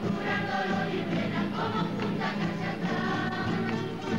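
A large group of children singing together in chorus, accompanied by many acoustic guitars strummed in unison.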